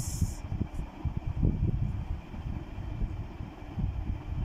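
Fine-liner pen writing on paper, heard mostly as irregular low bumps and rubbing from the hand and pen pressing on the page.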